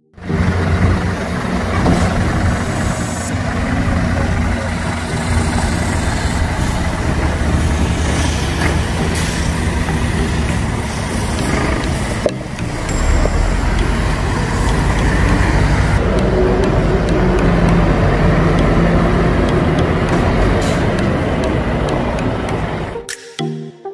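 Scania 540 truck's V8 diesel engine running. The sound dips briefly about halfway through and comes back deeper.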